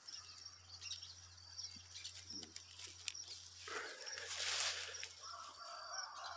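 Quiet rural background with small birds chirping faintly and a low steady hum, broken by a louder rustle about four and a half seconds in.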